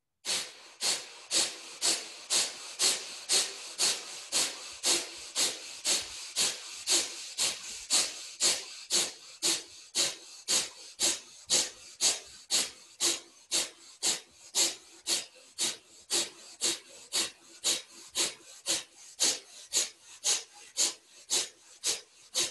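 Kapalabhati breathing: short, forceful exhales through the nose, about two a second in a steady rhythm.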